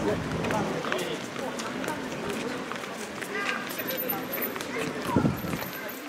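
Busy street sounds at a pedestrian crossing: the voices of passers-by talking and the patter of quick footsteps on the pavement, with one louder voice about five seconds in.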